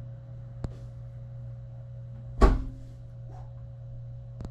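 A steady low room hum with a faint high tone over it, broken by a sharp click about half a second in and a loud, dull thump a little after two seconds, followed by a few faint rustles.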